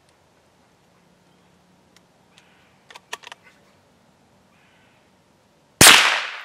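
A single .22 Long Rifle shot from a Daisy Legacy 2201 single-shot bolt-action rifle near the end, a sharp crack with a ringing decay. Before it, a few faint clicks about halfway through.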